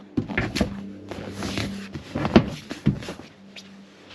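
Several sharp knocks and clunks of a boat's seat cushion and fibreglass seat locker being handled, the loudest about two and a half seconds in, over a faint steady hum.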